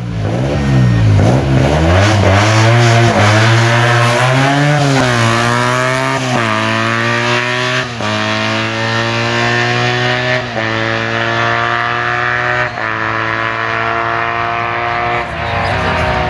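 Race-prepared classic Fiat 500's air-cooled two-cylinder engine revved hard as the car launches, then accelerating away up the road through the gears, its pitch dropping at each upshift about every two to three seconds and slowly fading with distance.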